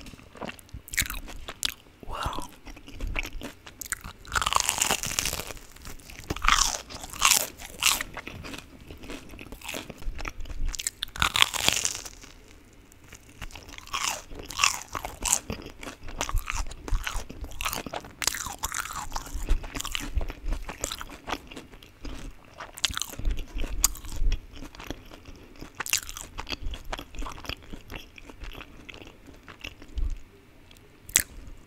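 Crunching bites and chewing of a crispy, sugar-coated Korean corn dog, right up against the microphone, in uneven bursts of sharp crackles.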